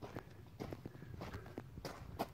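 A hiker's footsteps: light, irregular steps and scuffs as he walks down to the water's edge.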